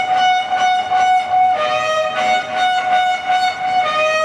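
Trumpet played into a microphone, sounding long held notes: a higher note that steps down to a lower one about one and a half seconds in.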